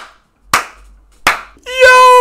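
Hand claps, evenly spaced about three-quarters of a second apart, two sharp strokes. Near the end a loud, long held vocal cry begins.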